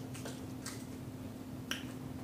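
Mouth sounds of someone eating fried pork chop: a few short, faint smacking clicks while chewing, the clearest one near the end.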